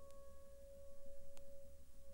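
A single piano note in a film score held and slowly fading, played from a vinyl record, with two faint surface clicks and a low rumble from the turntable.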